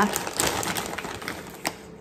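Thin plastic bags crinkling and small plastic toys and eggs clicking against each other as a hand rummages through them, a quick patter of small clicks that thins out near the end.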